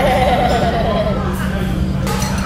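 A toddler laughing: one high-pitched, quavering laugh of about a second and a half that fades away.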